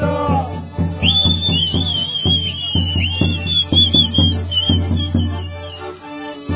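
Romanian folk wedding music played live by a fiddle-and-accordion band, with a steady even beat. From about a second in until near the end, a shrill, warbling whistle-like melody runs high above the band.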